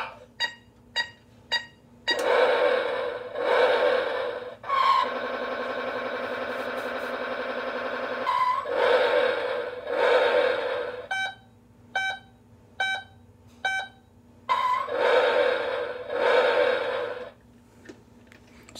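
Electronic sound effects from a Road Rippers 'It Comes Back' toy Hummer H2's sound chip, set off by its roof buttons: a run of short beeps, loud noisy engine-like bursts, a steady buzzing tone lasting about three seconds, then another run of five beeps and more bursts.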